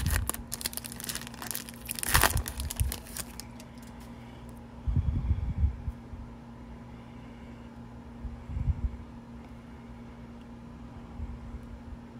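Foil trading-card pack wrapper torn open and crinkled in the hands for about the first three seconds, then quieter handling of the cards with a few soft low bumps. A steady low hum runs underneath.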